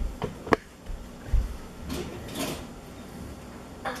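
A few light clicks and knocks, then a short scrape about two seconds in: an oven rack and pie dish being handled through oven mitts at an open oven.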